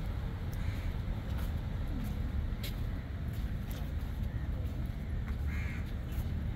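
Outdoor ambience: a steady low rumble with a bird calling briefly, once about a second in and again near the end.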